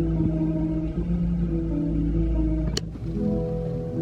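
Nylon-string classical guitar played fingerstyle, a slow melody of sustained plucked notes, with one brief sharp click about three quarters of the way through.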